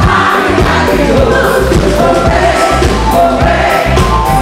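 Live band playing with two women singing together into microphones over a steady drum and bass beat.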